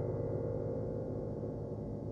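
Bechstein grand piano: several held notes ringing together and slowly fading, with no new notes struck.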